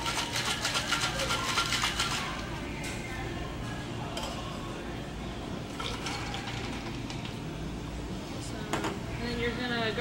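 Ice rattling hard in a metal cocktail shaker as a margarita is shaken, about four to five strokes a second, stopping suddenly about two seconds in. Afterwards the shaken drink is poured from the shaker tin into a glass, with a few light metal clinks.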